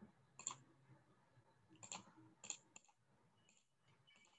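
A handful of faint, sharp clicks, irregularly spaced, over near silence; the loudest comes about half a second in.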